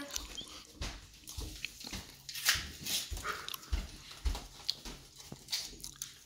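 Paper envelopes being torn open and handled on a wooden table: short ripping and rustling bursts with irregular dull knocks against the tabletop.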